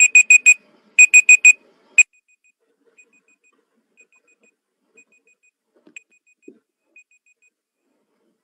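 Web countdown timer's alarm going off at zero: high electronic beeps in quick groups of four, one group a second. They are loud for the first two seconds, then carry on much fainter until they stop near the end.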